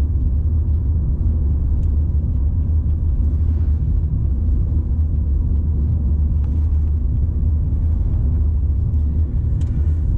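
Steady low rumble of road and engine noise heard inside the cabin of a car cruising on a highway.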